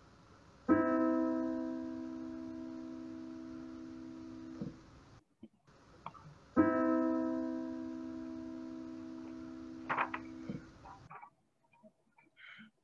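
A consonant two-note musical interval from a recording, struck and left to ring and fade, played twice.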